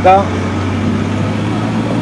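An engine idling steadily, a low even hum under the pause in speech.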